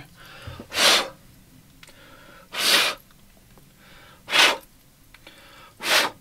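A man blowing four short, hard puffs of air onto the cap of an aluminum drink bottle, about one every second and a half, to blow off crud picked up from the floor. A fainter breath drawn in comes before each puff.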